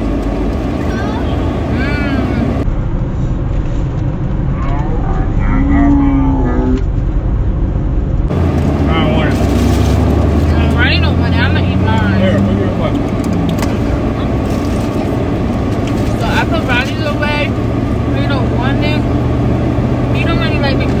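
Steady low hum and rumble of a car's engine and cabin, heard from inside the vehicle, with bits of quiet talk and voices now and then.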